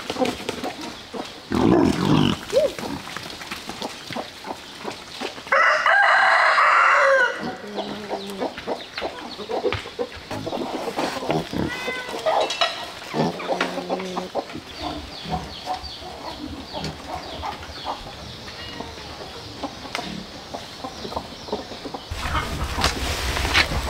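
A rooster crows once, loudly and for nearly two seconds, about six seconds in. Around it are short clucks from chickens and low grunts from pigs.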